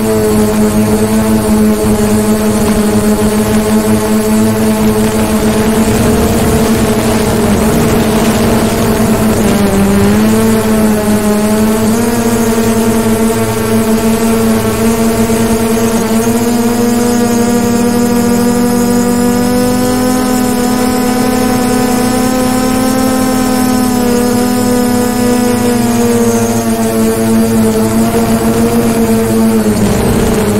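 DJI Mavic Pro quadcopter's propellers and motors running close to the microphone: a loud, steady buzzing hum. Its pitch dips briefly about a third of the way in, sits slightly higher for a while after, and dips again at the end as the motor speed changes.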